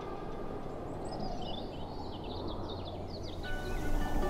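Outdoor ambience: a steady low rumble of open-air noise with a string of short, quick bird chirps through the middle. A plucked guitar comes in near the end.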